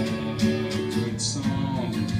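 Acoustic guitar being strummed, chords ringing on between strokes.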